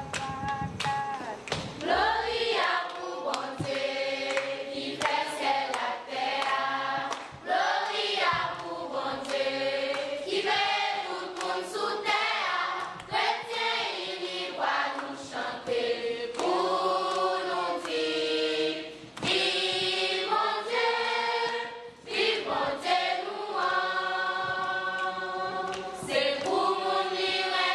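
Choir of mostly girls and young women singing together, in sung phrases a few seconds long with short breaks between them.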